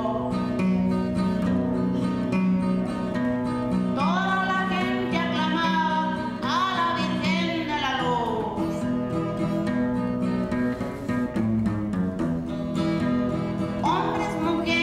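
A corrido played on acoustic guitar, a steady strummed accompaniment with repeating bass notes. A woman's singing comes in around the middle, her held notes sliding upward and then falling away.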